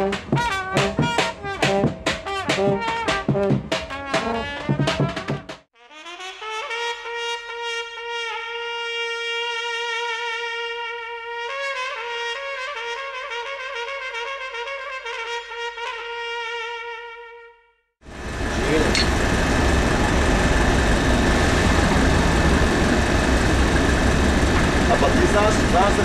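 A trumpet playing a fast run of tongued notes, followed by long held tones that step between a few pitches, some with a slight waver. About eighteen seconds in, this cuts to loud, steady street traffic noise.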